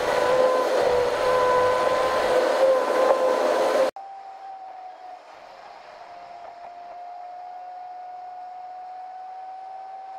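Loud, steady road and wind noise inside a moving car at highway speed, with a sustained steady tone over it. It cuts off abruptly about four seconds in, giving way to a much quieter steady hum with a faint tone that slowly rises in pitch.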